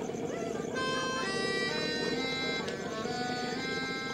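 Bagpipes playing: a melody of held notes stepping up and down in pitch over a steady drone, with the melody coming in about a second in.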